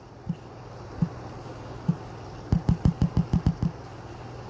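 Fingers tapping on a phone screen, picked up by the phone's microphone: three single taps about a second apart, then a quick run of about nine taps just past halfway. A low steady hum runs underneath.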